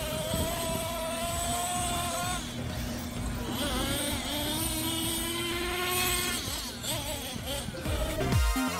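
Radio-controlled monster trucks driving, their motors making a steady whine that swoops up and down in pitch a few times as the throttle changes.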